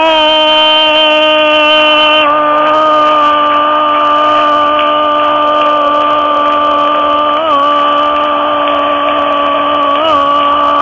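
A football radio commentator's goal call: one long, unbroken shout of "gol" held at a steady high pitch, with a slight wobble in the pitch about seven and a half seconds in.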